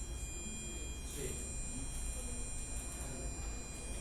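A micro:bit's speaker sounding a steady, thin buzzing 800 Hz tone from a tilt 'stabilizer' program. With no middle dead zone in the code, it keeps sounding even when the board is held level.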